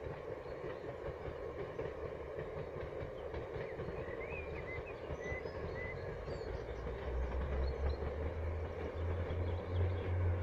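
Distant train running across a viaduct, a steady rumble, with small birds chirping in the middle. A deeper low rumble swells from about seven seconds in.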